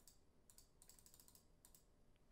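Near silence with faint computer keyboard typing: a run of light key clicks from about half a second in until near the end.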